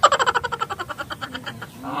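A single quavering bleat like a goat's, one long call that starts loud and dies away over about a second and a half.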